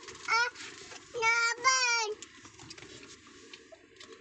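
A young child's high-pitched voice: a brief sound, then a longer drawn-out call of about a second, followed by faint small clicks and rustling.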